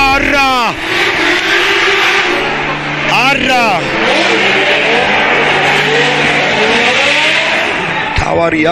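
Drift car engines running and revving on track, with pitch rising and falling over a steady hiss of tyre and track noise.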